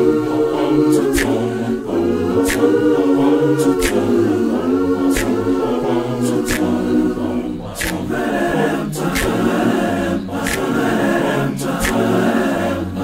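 Male a cappella vocal group singing in harmony, with sharp ticks keeping a steady beat about every second and a half.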